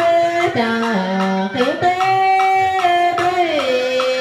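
Southern Vietnamese ritual ensemble music (nhạc lễ): a bowed two-string fiddle (đàn cò) plays a held melody that slides from note to note, over percussion knocks that come about two a second.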